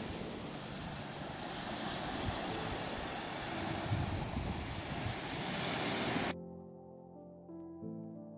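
Small sea waves breaking and washing up on a sandy beach. About six seconds in, the surf sound cuts off abruptly and soft music with slow held notes takes over.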